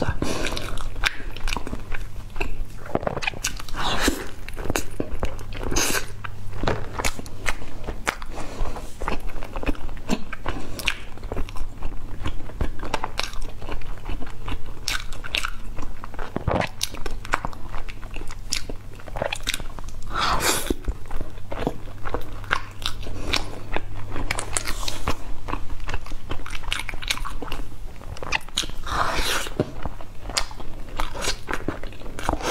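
Close-miked biting and chewing of a baked egg-and-scallion pastry: crisp crunches and wet mouth sounds, over and over.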